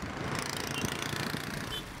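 Road traffic passing: cars and auto-rickshaws driving by, a steady mix of engine and tyre noise that swells slightly about halfway.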